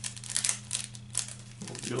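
The foil wrapper of a 2022 Topps Opening Day baseball card pack being torn open and crinkled by hand: a quick run of crackly rustles.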